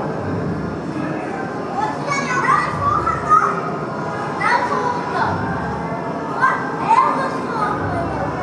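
Children's high voices calling out in several short bursts from about two seconds in, over a steady rumbling hiss.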